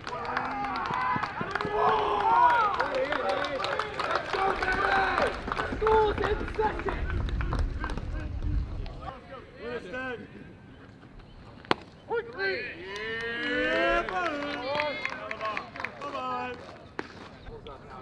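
Several people shouting and cheering at once in overlapping voices, loudest in the first half, then a quieter stretch broken by one sharp knock about two-thirds of the way through, followed by more shouting.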